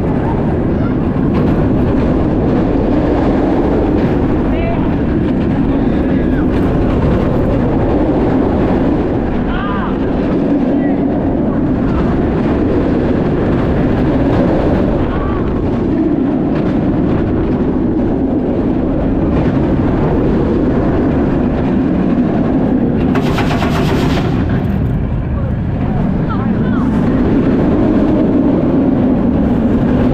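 Kumba, a Bolliger & Mabillard steel looping roller coaster, heard from aboard the train mid-ride: a loud, steady rush of wind over the camera and the rumble of the train on the track. A brief, sharper hiss comes about three-quarters of the way through.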